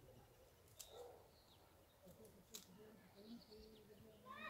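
Near silence outdoors, with faint distant bird calls and a couple of soft clicks.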